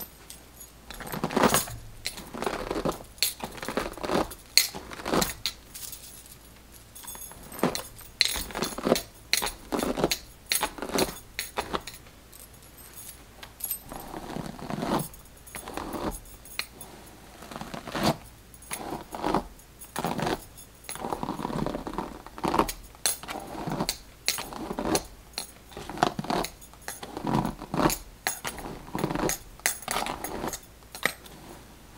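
A plastic-bristled detangling brush drawn again and again through a doll's long synthetic hair, one brushing stroke every second or two, with the beaded bracelets on the brushing wrist jingling and clicking along.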